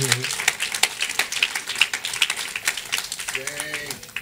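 Congregation clapping: a dense patter of many hand claps, with a brief voice near the end.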